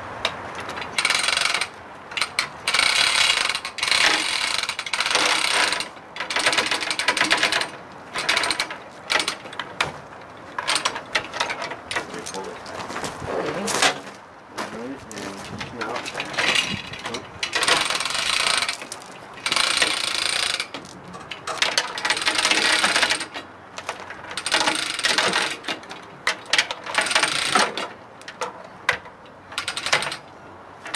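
Chain hoist being worked in repeated bursts of ratcheting and chain clatter, each lasting a second or two with short pauses, as it takes up the weight of a bench lathe.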